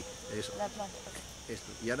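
Steady high-pitched chirring of insects in the background.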